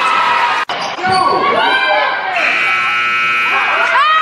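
Basketball game sound in a gym: voices and a bouncing ball, then the scoreboard buzzer sounds as one steady tone for about a second past the middle.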